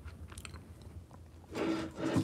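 Faint scattered clicks, then a brief sound from a person's voice about one and a half seconds in.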